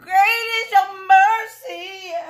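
A woman singing high vocal runs with no accompaniment, in three short phrases whose pitch bends up and down.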